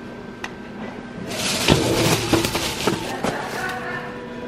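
Plastic-wrapped package rustling and knocking against a metal pickup locker as it is pulled out, for about two seconds starting just over a second in.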